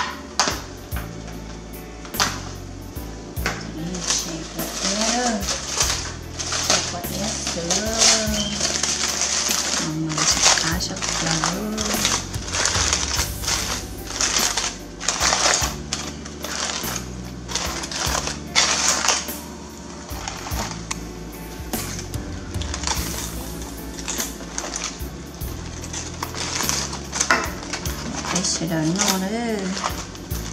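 Background music with a steady beat and a voice singing.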